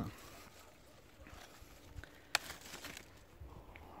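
Apple being picked off a young apple tree: faint rustling of leaves and branches with one sharp snap a little past the middle, then a moment of scratchy handling noise.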